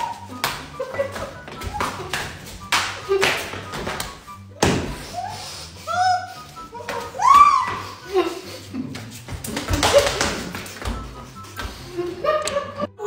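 A string of sharp smacks from flour tortillas slapped against faces, mixed with wordless muffled cries and squeals from people holding water in their mouths, over background music.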